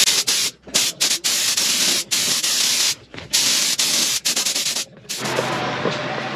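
Compressed-air paint spray gun hissing in long bursts broken by short stops as the trigger is pulled and released, spraying red paint. About five seconds in the spraying ends and a quieter steady hum takes over.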